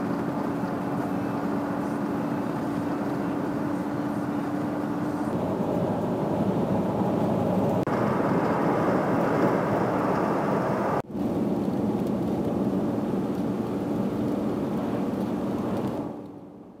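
Car driving along a highway, heard from inside the cabin: steady road and engine noise with a low hum, briefly cutting out about eleven seconds in.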